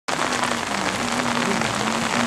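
Steady hiss of rain and wet spray, with the Ford Escort RS rally car's engine heard faintly beneath it as a steady note that dips briefly once.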